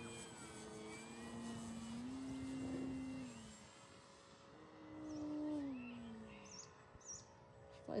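E-Flite Extra 300 RC aerobatic plane's electric motor and propeller droning overhead, its pitch climbing and then falling in two swells as the throttle changes through the manoeuvres.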